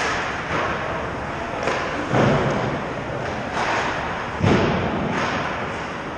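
Ice hockey play: skates scraping the ice with stick and puck clatter, and two loud thuds about two seconds in and again about four and a half seconds in.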